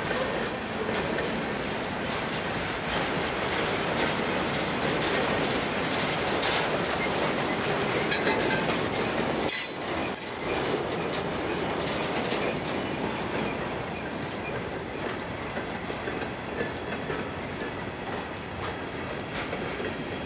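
Freight cars rolling past at speed: steady wheel-on-rail noise with the clickety-clack of wheels over the rail joints, dipping briefly about halfway through.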